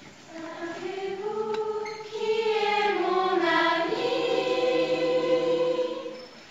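Youth choir of mostly girls' voices singing unaccompanied: a phrase enters softly, swells about two seconds in into a full held chord, and dies away just at the end.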